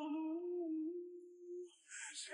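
Background song: a singing voice holds one long, slightly wavering note that fades out near the end.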